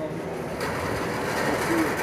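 Carriers of a track-based tote-moving conveyor rolling along their metal rails, a steady mechanical running and rattling noise that sets in about half a second in. One carrier runs rough and loose, sounding like a bad wheel bearing.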